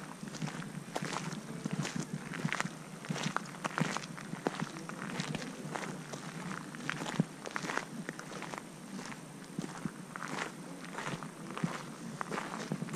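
Footsteps in boots crunching over gravel at a steady walking pace, about two steps a second.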